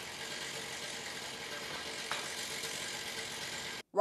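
A motor or engine running steadily, with one faint tick about two seconds in. The sound cuts off abruptly just before the end.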